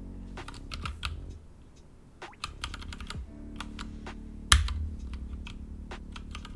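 Computer keyboard typing: irregular keystrokes entering vim editing commands, with one much louder key strike about four and a half seconds in.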